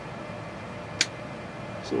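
Steady background hiss with a faint low hum, broken by one short, sharp click about a second in; a voice begins right at the end.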